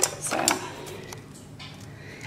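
Clothing being handled: short rustles of fabric in the first half second, a light click near the middle, then quiet room tone.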